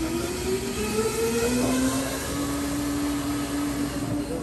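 An electric motor whirring, its pitch rising over the first second and a half, over a steady machine hum.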